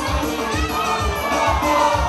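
Amplified dance music with a steady bass beat about two beats a second and a singing voice, with a crowd of dancers shouting and cheering over it.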